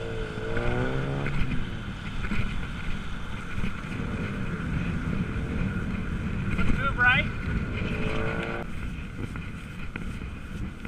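Wind rushing over a handlebar-mounted camera's microphone on a moving bicycle, over the hiss and rumble of riding a wet street in traffic. Brief pitched sounds cut through it: a wavering tone near the start, a quick rising whine about seven seconds in, and a tone that cuts off suddenly soon after.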